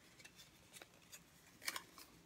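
Faint rustling and small clicks of a small cardboard product box and its paper being opened by hand, with one louder rustle near the end.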